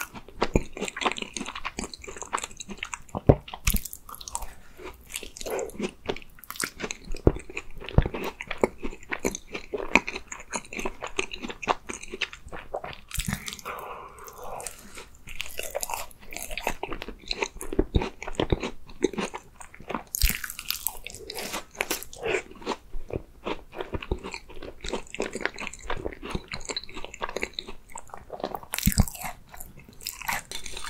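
Close-miked biting and chewing of a matcha cream tart, the crisp pastry shell crunching. A steady run of small crunches and clicks, with a few louder bites every several seconds.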